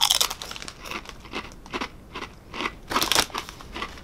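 A person biting into and chewing a thick crinkle-cut potato crisp: a sharp crunch at the first bite, then a run of crunches, heaviest about three seconds in.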